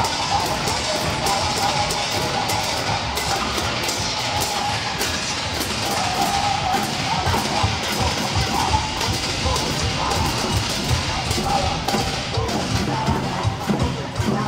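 Music with drums and percussion, heard outdoors over the street; the low drumming comes through more strongly in the last couple of seconds.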